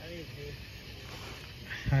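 Faint, distant talking over a steady background hiss, then a man's voice speaking close to the microphone near the end.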